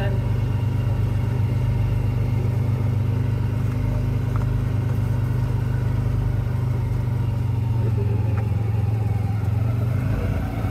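Side-by-side UTV engine running at a steady, even drone as the vehicle drives along a grassy track, heard from inside the open cab.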